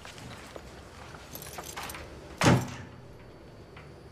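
An old wooden apartment door pushed shut, closing with a single loud knock about two and a half seconds in, after a few faint clicks.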